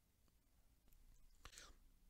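Near silence in a gap in the narration. About one and a half seconds in there is a faint click and then a brief soft breath.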